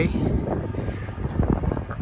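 Wind buffeting the microphone, an irregular low rumble, with a faint steady tone underneath.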